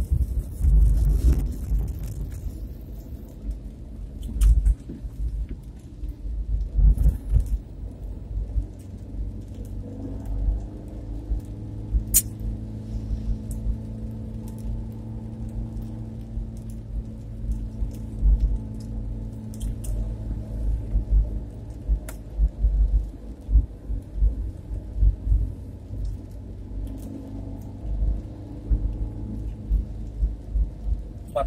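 Car cabin noise while driving in the rain: an uneven low road rumble, with a steady engine hum from about ten seconds in. A few sharp clicks stand out.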